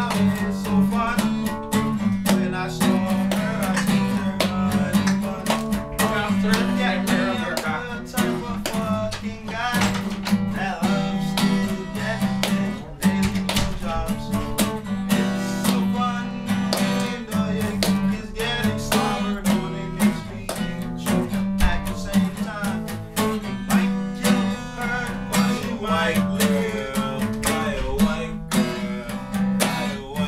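Acoustic guitar strummed steadily, chords struck in a quick continuous rhythm.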